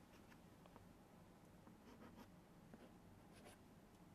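Faint chalk writing on a blackboard: a scattered run of short, light scratches and taps as strokes are drawn.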